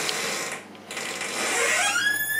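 A door being opened, its hinge giving a squeak that rises in pitch near the end and then holds steady, after some rustling handling noise.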